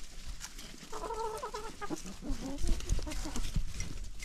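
A flock of chickens clucking and calling: a drawn-out quavering hen call about a second in, then a run of lower clucks. Light clicks and rustles run underneath as the birds scratch and peck in dry leaf litter.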